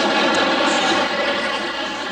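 Studio audience laughing at a punchline, a dense steady wash of crowd laughter that eases slightly toward the end.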